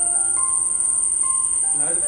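Crickets trilling in one steady, high, unbroken tone. Soft background music of slow, single held notes runs beneath.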